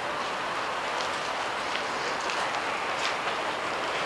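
Steady hiss of distant city traffic, with a few faint taps of footsteps from a group walking on paving.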